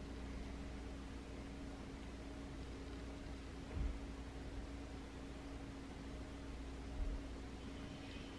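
Quiet room tone: a steady low hum with faint hiss, broken by two soft, dull low thumps, one just before the four-second mark and one about seven seconds in.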